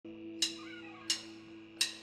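Three sharp percussion ticks about 0.7 seconds apart, marking a steady beat over a soft held keyboard chord.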